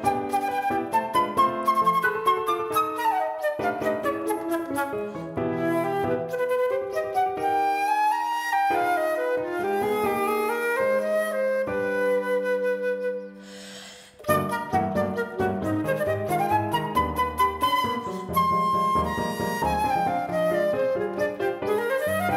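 Flute and piano playing a fast, rhythmic classical duet: quick flute runs over chordal piano. About twelve seconds in the music slows into held notes, dips almost to silence for a moment, then picks up again at tempo.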